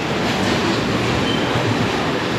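Passenger train of red-and-grey coaches running alongside the platform: a steady rumble and rush of wheels on the rails.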